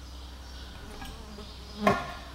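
A single sharp metallic clack near the end, with a short ring after it, as steel parking brake shoe hardware is worked into place on the hub. A low steady hum runs beneath.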